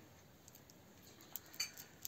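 Quiet room with a few faint clicks of prayer beads being fingered, in the second half.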